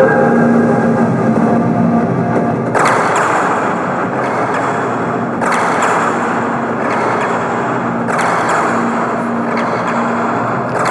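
Instrumental electronic music from an AudioKit Synth One software synthesizer: a held pad fades out early on. From about three seconds in, a rushing noise swell starts sharply and dies away, and it comes back about every two and a half to three seconds.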